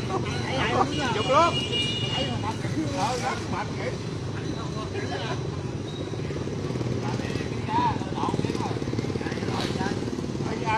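People's voices talking over the steady drone of motorbike engines in street traffic.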